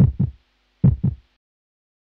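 Heartbeat sound effect: deep double thumps, lub-dub, about 70 a minute. Two beats are heard, and then it cuts off suddenly.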